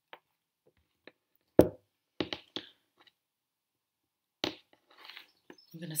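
Tarot cards being handled on a hard, glossy tabletop. There is a sharp knock about a second and a half in, then a few quick clicks, then another knock near the end.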